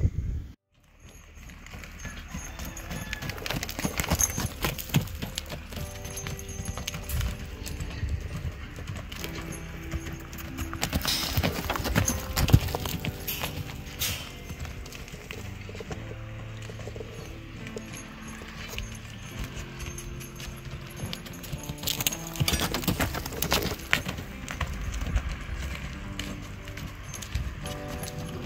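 Hoofbeats of a paint horse loping around a soft dirt round pen under a rider, a steady run of muffled thuds. Background music joins in about six seconds in and runs under the hoofbeats.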